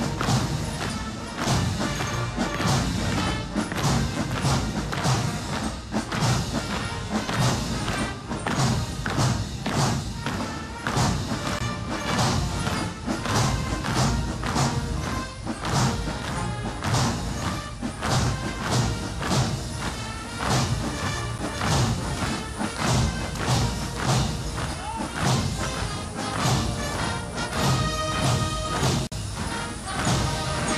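Military march music with a steady, regular drum beat.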